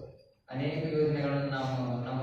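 A man's voice speaking in a steady, even-pitched monotone close to a chant. The sound fades out right at the start and cuts back in about half a second in.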